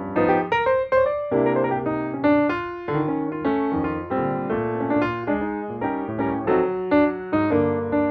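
Background music: piano notes played in a steady stream of chords and melody.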